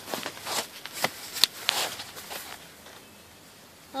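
Hammock fabric rustling and shuffling as a person shifts about in it, with a sharp click about one and a half seconds in, then quieter.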